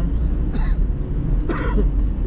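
A man gives a single short throat-clearing cough about one and a half seconds in. Under it runs the steady low rumble of the car's engine and road noise inside the cabin.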